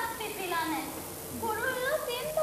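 A child's high-pitched voice in short phrases, its pitch sliding up and down.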